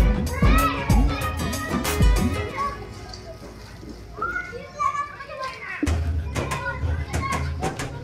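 Children shouting and calling out as they play, over music with a deep, dropping bass thump. The beat stops about three seconds in and comes back with a steady bass near six seconds.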